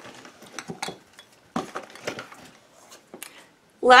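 Small glass candle jars being handled: a scattering of light clinks and knocks as they are picked up and set down.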